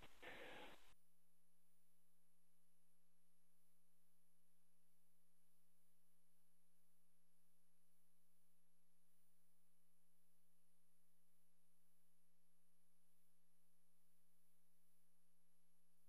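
Near silence: a faint, steady electronic hum made of a few thin unchanging tones, with no other sound.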